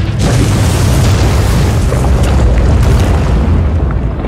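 Film sound effect of a huge rock breaking up and crashing down: a loud, deep, sustained rumble with crackling debris.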